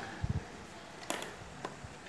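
Faint handling sounds on a workbench: a couple of low bumps early on, then a sharp click a little over a second in and a few light ticks, as a hand moves over the circuit board and its wires.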